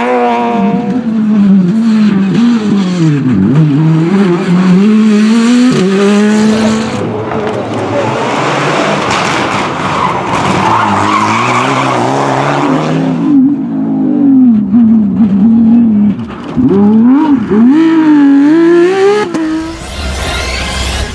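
Rally cars driven hard one after the other, a Peugeot 208 and then a Mitsubishi Lancer Evolution, engine revs climbing and dropping sharply again and again through gear changes and braking for a corner, with tyre squeal and a rushing noise in the middle.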